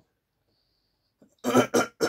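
A man's voice: near silence for about a second and a half, then two short coughs close together near the end.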